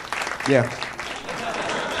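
Audience applauding, a dense patter of many hands clapping, as a stand-up set ends. A man's voice says a short "yeah" about half a second in.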